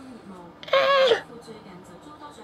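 Baby giving a single high-pitched squeal, about half a second long, a little past the middle.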